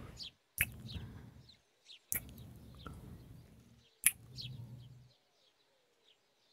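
Close-miked kisses: three sharp lip-smacks about a second and a half apart, each followed by a soft hummed "mm". Faint birds chirp in the background, plainest near the end.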